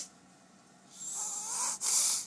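A baby making breathy snorting noises, starting about a second in and loudest near the end.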